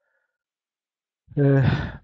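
Silence, then about 1.3 s in a man's loud, breathy, voiced sigh.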